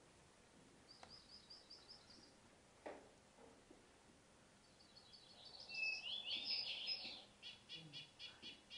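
Recorded forest songbird chorus from a deer-free island, played back faintly. A short run of quick, thin, high notes comes about a second in. From about halfway, a long, rapid, high-pitched tumbling song follows.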